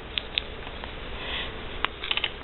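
Quiet handling of a clear plastic pocket-letter page protector: a few light ticks and a soft rustle over a steady low hum.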